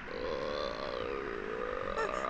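A long held, slightly wavering eerie tone.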